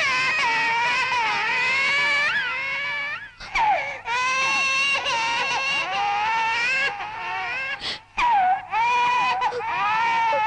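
A woman crying loudly in long, high-pitched, wavering wails, broken by two short pauses for breath about a third of the way in and near the end.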